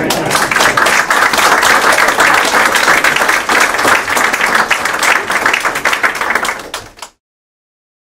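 Audience applauding, a dense patter of many hands clapping, with some laughter about a second in; it cuts off suddenly about seven seconds in.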